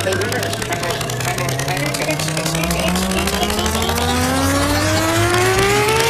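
Electronic psytrance music building up: a synth riser, one pitched tone with many overtones gliding steadily upward, over a fast pulsing beat and a steady bass.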